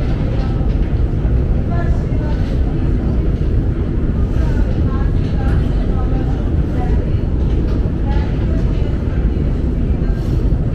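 Steady low rumble of a very deep, long metro escalator running, with faint voices over it.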